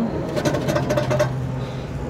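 Rapid clicking and rattling of plastic for about a second, as a hand works the upstream oxygen sensor's wiring connector loose, over a steady low hum.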